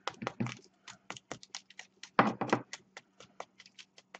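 A small hammer tapping a crumpled ball of aluminium foil held in the hand, in rapid light taps several a second, with a louder run about two seconds in. The taps are compacting the foil into an egg-shaped core.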